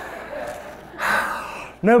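Soft laughter from the audience at first, then a man's loud breathy sigh into the microphone about a second in, followed by a short laugh near the end.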